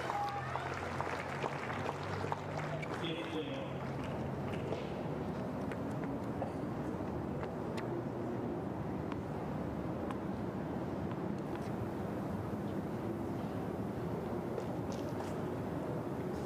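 Indistinct murmur of spectators' voices over steady ambient crowd noise, with a few faint knocks.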